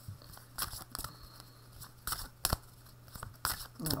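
A tarot deck being shuffled by hand: scattered quick snaps and rustles of card edges against each other, with a few louder snaps.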